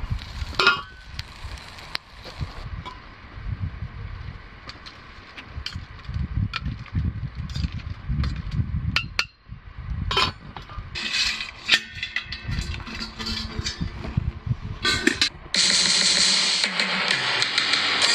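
A stainless steel lid clanks onto a metal stockpot on a campfire grill, followed by scattered metallic clinks and knocks from handling the pot, over a low steady rumble. Background music comes in near the end.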